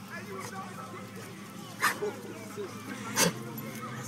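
Dogs making soft whimpering sounds while meeting, with two short, sharp sounds about two seconds in and near the end.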